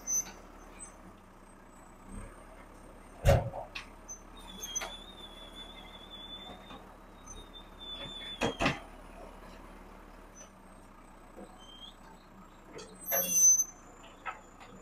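Backhoe loader working a load of rubble over a steel dump-truck bed, its engine running low and steady. Two heavy thuds stand out, about three and eight seconds in, with a short hissing burst near the end.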